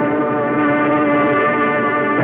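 Opera orchestra holding a loud, steady chord with the brass prominent, in an old live recording whose sound is cut off in the treble.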